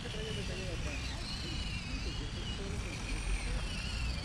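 Whine of a small-scale RC rock crawler's electric motor and gearbox, its pitch wavering up and down with the throttle as it crawls over concrete rock, with distant voices and a low rumble underneath.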